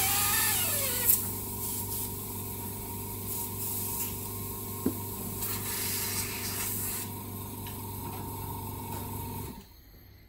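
Airbrush spraying with a steady hiss, the small airbrush compressor humming underneath. The airbrush is being flushed through to clean it. The spraying stops about seven seconds in, and the compressor cuts out near the end.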